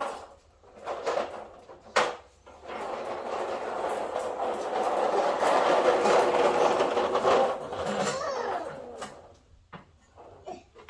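A few sharp knocks, then a vehicle passing by outside, its sound swelling over several seconds and fading away near the end.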